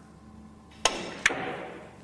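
Two sharp clicks less than half a second apart, each with a short ringing tail: a cue tip striking the cue ball, then a ball striking another billiard ball, on a Russian pyramid table.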